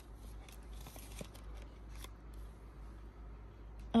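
Faint rustling and small clicks of thin paper and card being handled.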